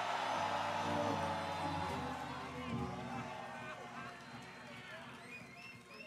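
Concert crowd cheering, whooping and laughing, swelling in the first second or so and fading away after about three seconds, over a chord held by the band.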